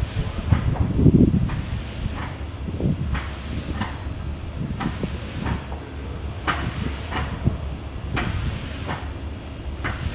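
Weighted sled dragged in jerks across artificial turf by an arm-over-arm rope pull, with short knocks and slaps of rope and hands about twice a second over a low scraping rumble. The rumble is loudest about a second in.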